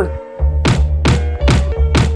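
Pounding on a door: four heavy knocks about half a second apart, over background music with a deep steady bass.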